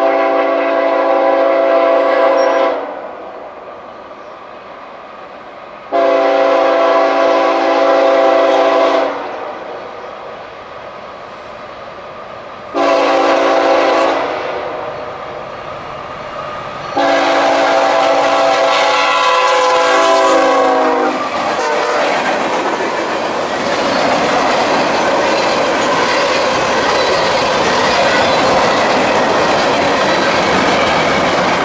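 Freight locomotive's multi-note chord air horn sounding four blasts, long, long, short, long: the standard grade-crossing signal. After the last blast, loaded freight cars roll past with wheels clacking over the rail joints.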